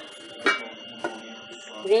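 Lid of a cast-aluminium pot being lifted off. There is a light metal clink about half a second in and a softer knock about a second in.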